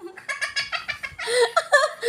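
A young child giggling in quick short bursts, rising to a louder, higher squeal of laughter near the end.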